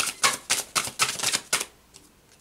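A deck of oracle cards being shuffled by hand: a quick run of crisp card snaps, about six a second, that stops after about a second and a half.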